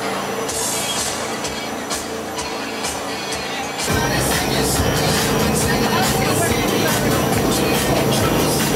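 Tour jet boat's engine and water jet running steadily, heard from inside the cabin. It gets louder about four seconds in.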